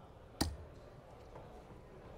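A single sharp click with a low thud about half a second in, over faint room tone.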